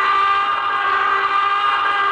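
A long, steady, shrill whistle-like tone with many overtones, held at one pitch: a dramatic sound effect or score stinger marking the horror climax.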